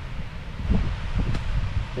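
Strong wind buffeting the microphone, heard as a steady low rumble.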